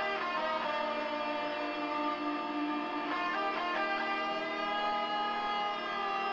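Electric guitar music: sustained, ringing notes with a few note changes and no clear drumbeat.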